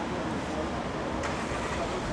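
Street ambience: steady road-traffic noise with indistinct voices in the background.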